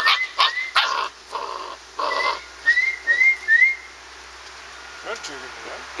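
A person whistling short rising chirps in quick pairs and runs, while standard poodle puppies yip and bark in short bursts during the first couple of seconds.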